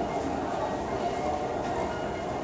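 Steady crowd hubbub in a large hall, many distant voices and movements blending into an even background din.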